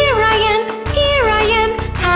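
Children's nursery-rhyme song: a childlike singing voice over a bouncy backing track with a steady beat, with two falling sung phrases.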